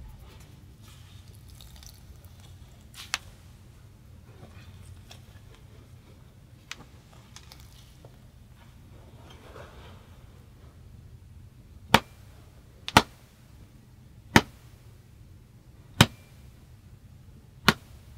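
Monkey nuts (peanuts in their shells) wrapped in a cloth, crunched and struck with a wooden handle: a few faint cracks at first, then five sharp cracks over the last six seconds.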